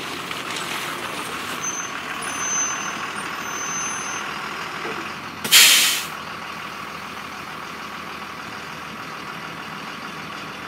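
Bus sound effect: a steady running vehicle noise, broken about five and a half seconds in by one loud air-brake hiss as the bus stops. The noise then runs on.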